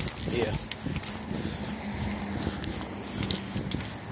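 Keys jingling with small metallic clinks as someone walks, over a low steady hum through the middle.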